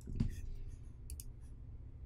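Faint scattered clicks and small knocks in a quiet small room: a soft low thump just after the start, then a few sharp little clicks about a second in, over a steady low hum.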